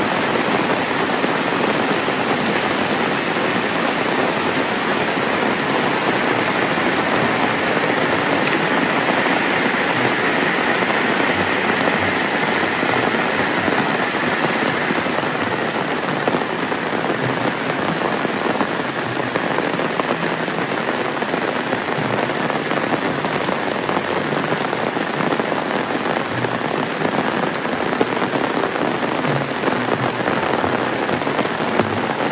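Steady heavy rain falling on roofs and a wet paved road, an even, unbroken hiss that is a little brighter through the middle stretch.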